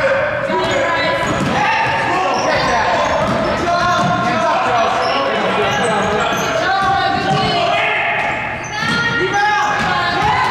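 Basketball dribbled on a hardwood gym floor, bouncing repeatedly. Under it, many overlapping voices of spectators and players shout and call out, echoing in the gymnasium.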